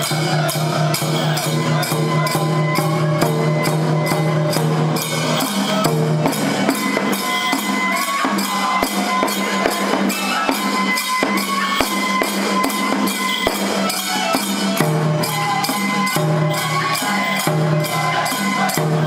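Toramai tiger-dance festival music: a taiko drum and jingling metal percussion keep a steady, quick beat, with held pitched tones over it.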